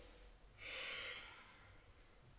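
A woman's single soft breath, a short hiss lasting under a second that starts about half a second in, taken in time with a yoga movement.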